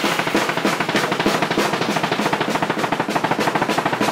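Rock drum kit played fast and hard: a dense stream of snare, tom and kick drum strokes under crashing Sabian cymbals, with Remo coated Emperor heads on the drums.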